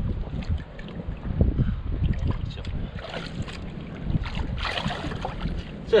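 Hands sloshing and splashing in shallow muddy water while groping for fish, with wind rumbling on the microphone.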